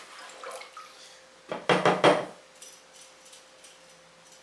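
Wire balloon whisk working a bucket of wood-ash and terracotta glaze slurry, quiet at first. About one and a half seconds in it clatters against the bucket in a quick run of four or so sharp knocks, followed by a few faint ticks.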